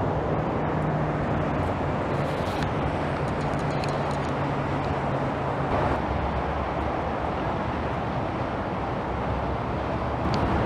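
Steady outdoor road traffic noise, an even rumble and hiss with a faint low hum under it for the first half.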